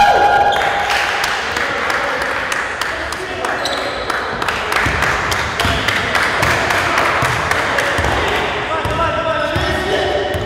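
Basketball being dribbled on a wooden gym floor, a run of bounces, with players' voices calling out over it in a large gym.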